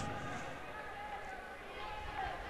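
Faint ambience of a handball match in play in an indoor sports hall, with distant voices echoing across the court.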